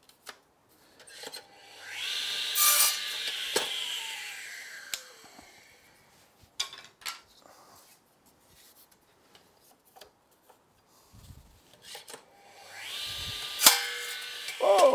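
Electric mitre saw starting and cutting through a thin wooden strip, then its blade winding down with a falling whine. About ten seconds later the motor starts again and a second cut begins near the end.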